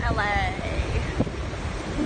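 Wind buffeting a phone's microphone, a rough, rumbling hiss, with a brief voice in the first half second.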